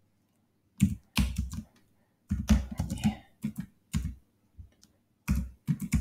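Typing on a computer keyboard: irregular keystrokes in short runs, starting about a second in.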